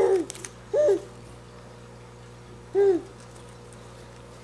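A baby vocalising: three short, high cooing calls, each rising and falling in pitch, the second just under a second in and the third near three seconds in.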